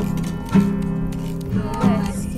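Music with acoustic guitar, chords struck about once a second and left to ring.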